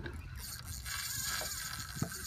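Spinning fishing reel's mechanism whirring steadily, a fine, even, high-pitched mechanical purr that starts about a third of a second in.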